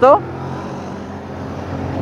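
Kymco Urban 125 scooter's 125 cc single-cylinder engine running at a steady cruise, under a steady rush of wind and road noise.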